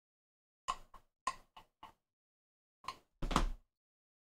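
Handling clicks and knocks of a project box and its cold shoe adapter being fitted to a metal cold shoe mount: five quick taps in the first half, then a longer, louder knock near the end.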